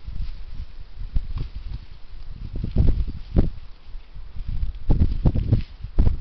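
Irregular low thumps with rustling, as of footsteps on grass and a hand-held camera being carried; the heaviest thumps come about three seconds in and again around five seconds in.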